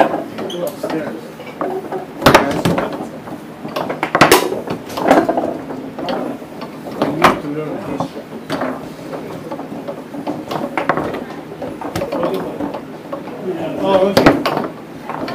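Foosball table in play: irregular sharp knocks as the hard ball is struck by the men and hits the table, with the rods clacking, over background chatter.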